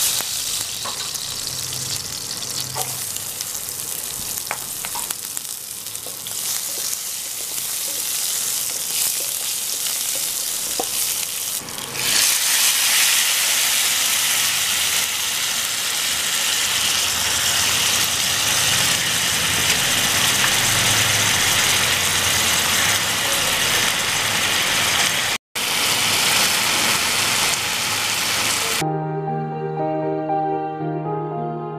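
Hot oil sizzling in a pan as tempering seeds fry, with a spatula stirring. About twelve seconds in, the sizzling turns louder and brighter as chopped onions and tomatoes fry. Music comes in near the end.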